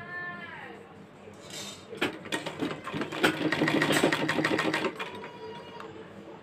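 Domestic sewing machine stitching for about three seconds, starting about two seconds in, as a loose basting stitch is run through a blouse sleeve.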